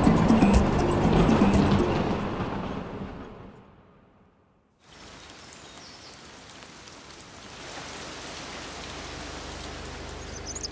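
Music fading out over the first few seconds, then after a brief silence, steady rain falling on water and leaves, a little louder towards the end.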